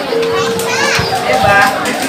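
Children shouting and calling, one voice holding a long note for about the first second before others rise and fall in excited calls, over crowd chatter.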